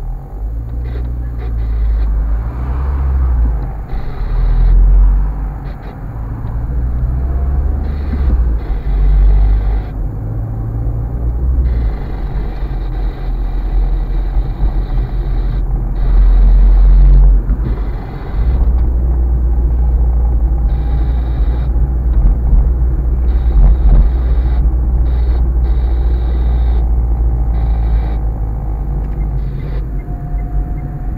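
Low engine and road rumble of a car heard from inside its cabin as it pulls away and drives through town. The rumble swells and eases several times in the first half, then runs steadily.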